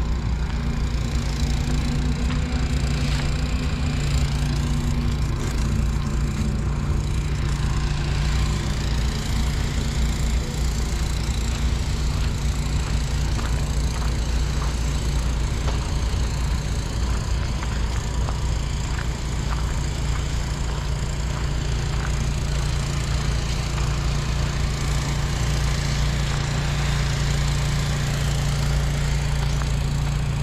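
A steady low mechanical hum, like an engine running, holding the same level throughout, over a haze of outdoor noise.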